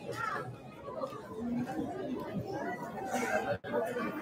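Audience chatter in a hall: many voices talking at once, none clear enough to make out, with a brief break in the sound near the end.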